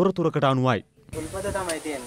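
Water hissing as it leaks from a plastic water pipe: a steady hiss that starts about a second in, after a short stretch of speech.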